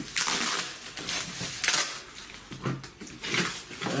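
Plastic packaging crinkling and rustling in several short bursts: comic-book polybags and bubble wrap being handled.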